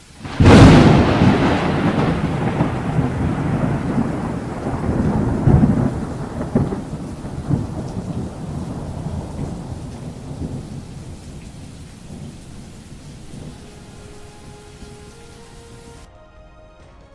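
A thunderclap in heavy rain: a sudden loud crack about half a second in, then a long rolling rumble with a few further cracks, slowly fading away.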